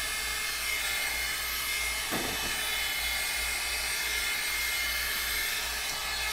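Hot Tools hot-air blow brush running steadily: an even rush of air with a faint motor whine as it is drawn through a synthetic wig.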